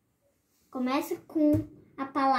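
A child's voice speaking, starting about a third of the way in after a moment of near silence.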